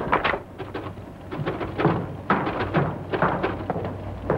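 Papers set down with a thud on a desk, followed by a run of irregular knocks and clatter, over a steady low hum.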